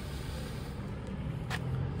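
Steady low rumble of distant road traffic, with one short click about one and a half seconds in.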